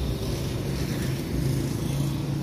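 Light rail tram passing close by, giving a steady low hum with a droning undertone from its motors and running gear.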